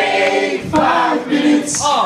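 A group of men and women singing a line of the chorus together in held notes, with little or no instrument behind the voices.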